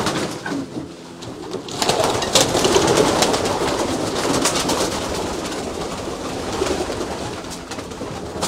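Domestic racing pigeons cooing, several birds at once, in an enclosed loft, with a brief lull about a second in and scattered sharp clicks throughout.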